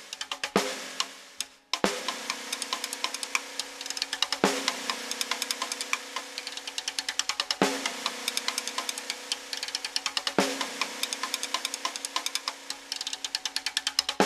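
Electronically prepared snare drum played with sticks in a fast, dense stream of strokes. Stronger accents come about every three seconds, and each is followed by a steady low tone that hangs under the rapid strokes until the next accent.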